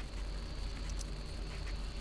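Steady background hum with a faint high-pitched whine, and a single light click about halfway through, from the hand tool on the valve rocker arm.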